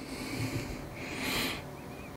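A man breathing close to the microphone: soft airy breaths, the louder one a little past one second in.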